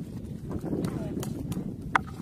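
Woven bamboo fish trap handled against a plastic bucket: a low scraping rustle with soft knocks, and one sharper knock near the end.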